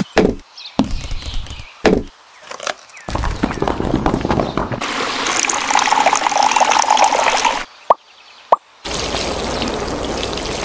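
A few short thumps, then water pouring and splashing into a small pond for several seconds. Two sharp plops follow, then steady pouring again.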